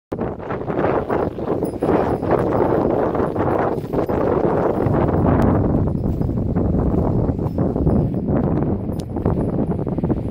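Continuous rustling and scuffing: footsteps and small hooves on dry, stony ground, with leafy branches brushing.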